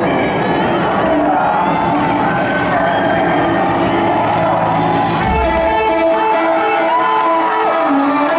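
Concert crowd cheering and whistling over guitar notes. After a low thump about five seconds in, an electric guitar plays a repeating riff clearly over the crowd.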